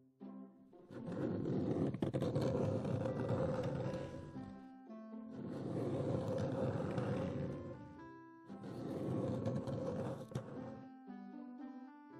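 A sofa dragging across the floor: three long scraping swells of about three seconds each, rising and falling, over light background music.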